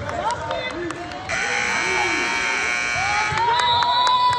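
Gymnasium scoreboard buzzer sounding for about two seconds, starting just over a second in, with the game clock at zero: the end of a period. Voices of players and spectators carry on around it.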